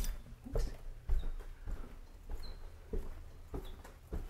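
Footsteps climbing carpeted stairs: dull, muffled thuds, a step roughly every half-second.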